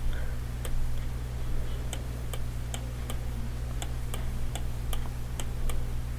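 Light, irregular clicks of a stylus tapping on a pen tablet while handwriting, several a second, over a steady low hum.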